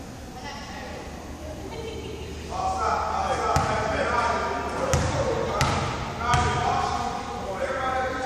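A basketball bounced four times on a hardwood gym floor, starting about three and a half seconds in, the last three about 0.7 s apart, a free-throw shooter dribbling before the shot. Several voices are heard over the bounces in the large gym.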